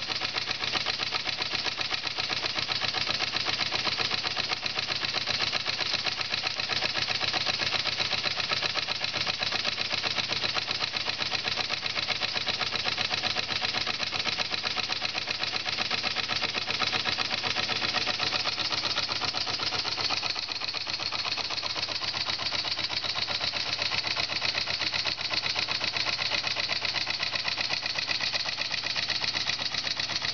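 Large model steam engine (7/8-inch bore, 1 1/2-inch stroke) running fast and steady with no governor, its exhaust beating in a quick, even rhythm while it drives a small generator. It runs smoothly on live steam, the boiler building pressure at about 14 psi.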